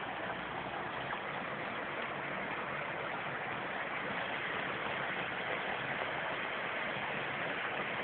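Steady rush of stream water flowing over rocks.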